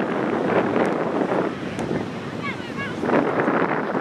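Wind buffeting an outdoor camera microphone over a background of voices from spectators and players on the pitch, with a few short high chirps about two and a half seconds in.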